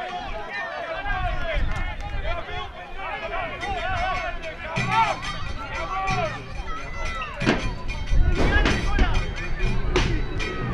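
A crowd of football supporters singing a chant in chorus, backed by drum beats, with steady low notes joining in about halfway through.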